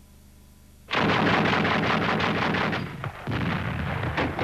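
Rapid gunfire from a battle soundtrack, starting suddenly about a second in as a dense, continuous rattle of shots. It eases briefly near the three-second mark and then continues.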